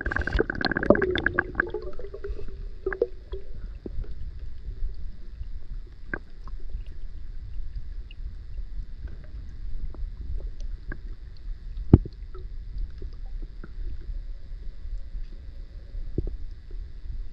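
Underwater sound picked up by a camera submerged in a river: splashing and bubbling in the first second or two as it settles under the surface, then a steady muffled low rumble with scattered faint clicks and one sharp knock about twelve seconds in.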